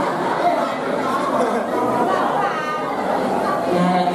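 Speech and chatter: several voices talking at once in a large, echoing hall.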